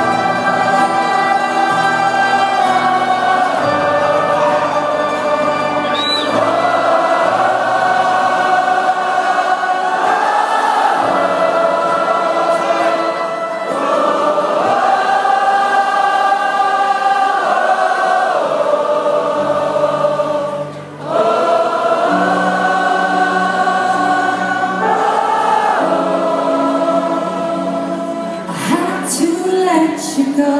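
Live band music: long held notes sung by several voices together, moving to a new chord every few seconds, with a brief drop in level about three-quarters of the way through.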